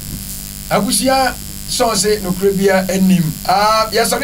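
A steady electrical mains hum on the studio audio, with a man's voice in short, unclear phrases over it.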